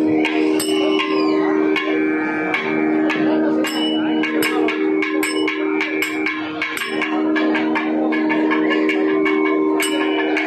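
Carnatic nadaswaram ensemble accompaniment: a steady drone from a shruti box under quick, ringing strokes of small hand cymbals (talam), several per second.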